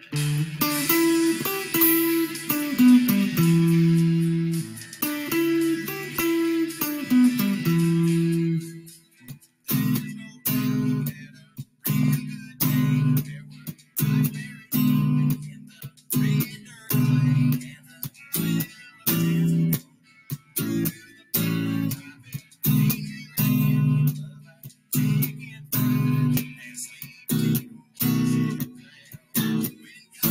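Electric guitar playing country chords along with a song. For about the first nine seconds the chords ring on; after that they come as short, stopped strums roughly once a second, with silence between.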